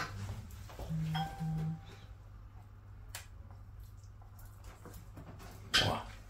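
A quiet kitchen with a steady low hum. About a second in come two short low hums, like a voice going "mm-mm". Later come a couple of clicks of a metal spoon against a small saucepan as melted chocolate and puffed-rice mixture is spooned out, the sharper click near the end.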